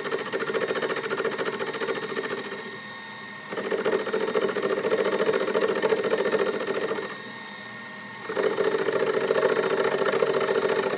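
Metal lathe cutting a metal workpiece in repeated passes: a rasping cutting noise that stops a little under three seconds in, starts again after about a second, stops again near seven seconds, and resumes past eight seconds. In the gaps the lathe runs on more quietly with a steady hum.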